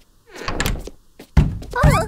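Cartoon sound effects: a short noisy swish, then two heavy thuds about half a second apart, the second with a brief voice-like sound over it.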